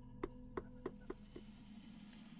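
Five faint, light clicks at the desk, about three a second, over a steady low hum.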